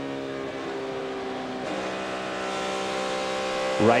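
On-board sound of a NASCAR Cup Chevrolet's pushrod V8, lifted off the throttle through the corner, then back on the throttle about two seconds in, the engine note building steadily. A clean lift and a smooth return to full throttle without floating the pedal is the sign of a car that is handling well.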